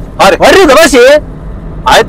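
A person's voice loudly repeating the same short phrase again and again, with its pitch swinging up and down, in two bursts with a short pause between.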